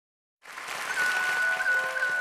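Audience applause that comes in just after the start, with a single high note from a flute joining under it just before the first second and held steadily as the instrumental intro of a song begins.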